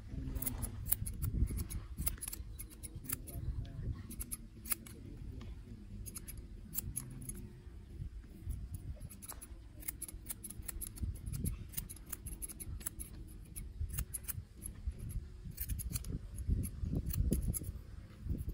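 Steel barber scissors snipping hair over a comb: quick runs of crisp clicks with short pauses between, over a steady low rumble.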